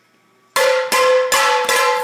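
Four loud metallic clangs in quick succession, starting about half a second in, each ringing on until the next hit, made close to the microphone to startle a dozing man awake.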